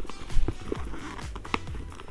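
Background music with a few light knocks and rustles of a wallet being packed into a small leather tote bag; the loudest knock comes about half a second in.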